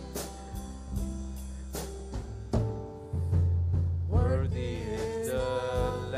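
Live worship band playing a slow song with electric bass, drums and congas, and a voice singing the melody from about four seconds in.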